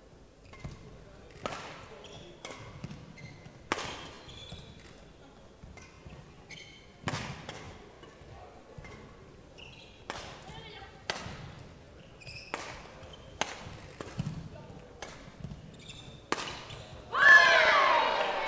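Badminton rally: sharp racket strikes on the shuttlecock about once a second, with short shoe squeaks on the court floor between them. A loud shout rings out near the end as the point is won.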